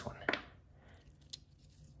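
Agate rock pieces being handled: a short scrape-and-knock about a third of a second in and a small click a second later, over low room tone.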